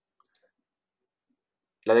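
Two faint computer mouse clicks in quick succession near the start, selecting a list in the app.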